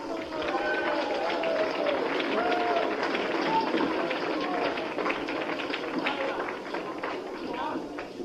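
Between-song noise from the gig: several voices talking over one another, with scattered short knocks and claps mixed in.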